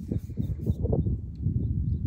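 Wind buffeting the phone's microphone, a gusting low rumble.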